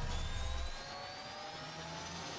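Synthesised rising sweep from an animated intro: several pitched tones glide slowly upward over a deep rumble, which drops away about two-thirds of a second in.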